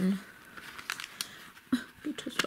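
Plastic CD jewel case being handled and opened: a few faint clicks and rustles.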